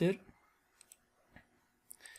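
A few quiet computer mouse clicks, single sharp ticks spaced about half a second apart, after a word of speech at the very start.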